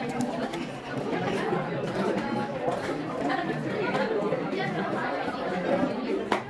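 Students' chatter: several voices talking over one another, none standing out clearly, at a steady level throughout.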